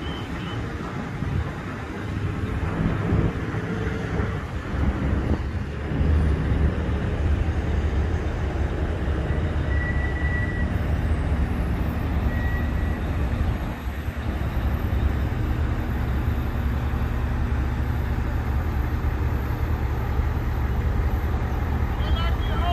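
Truck-mounted crane's engine running steadily under load while it hoists a commercial rooftop AC unit, growing louder about five seconds in and then holding. Two short faint high tones are heard in the middle.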